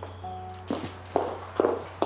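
A soft mallet-instrument note fades out. Then footsteps on a hard floor begin, about two steps a second, over a steady low hum.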